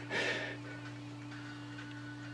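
A brief breath-like puff near the start, then a quiet, steady low hum.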